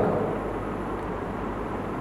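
Steady background noise with no speech: an even hiss with a faint, thin high-pitched whine.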